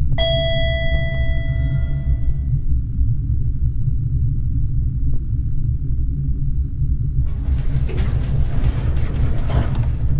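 An elevator-style bell chime rings once and fades over about two and a half seconds, over a deep, steady rumble. About seven seconds in, a hissing whoosh joins the rumble.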